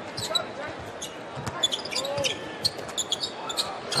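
A basketball being dribbled on a hardwood court, with short sneaker squeaks, over the steady murmur of an arena crowd.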